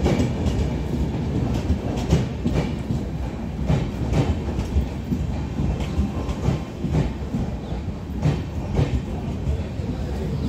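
An Indian Railways express's passenger coaches rolling past a platform: a steady low rumble of wheels on rail, with sharp clacks at uneven intervals as the bogies cross rail joints.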